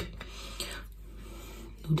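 Soft scraping of a metal fork against a plate as a slice of pizza is picked up, fading after about a second.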